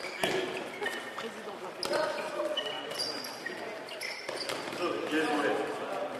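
Handball drill in a sports hall: the ball slapping into hands and bouncing on the floor, with short high sneaker squeaks and running footsteps, all echoing in the hall.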